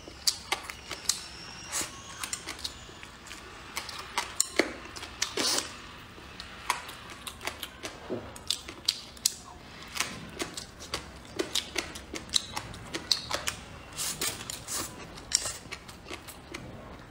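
Close-miked chewing of spicy enoki mushrooms and braised pork trotter: irregular wet mouth clicks and smacks, several a second, with soft crunches.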